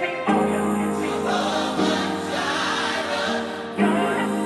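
Electronic pop remix with layered, choir-like sung vocals over held chords, the harmony shifting every second or two.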